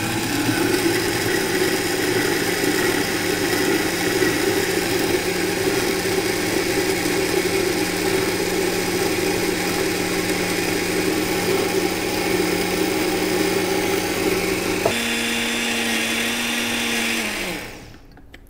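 Countertop jug blender running loud and steady, emulsifying an orange-and-garlic porra purée as olive oil is drizzled in through the lid. About fifteen seconds in its pitch jumps higher, then the motor winds down and stops just before the end.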